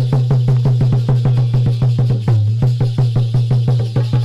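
Instrumental interlude of devotional folk music driven by a fast, even hand-drum rhythm. Several strokes a second play over deep bass strokes whose pitch slides downward.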